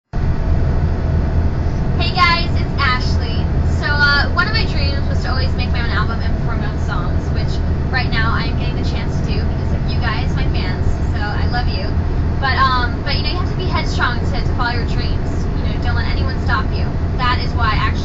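A person talking, from about two seconds in, over a steady low rumble.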